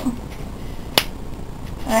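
A single sharp plastic click about a second in, as the Conair Infinity hair dryer's straightening attachment is turned on its nozzle.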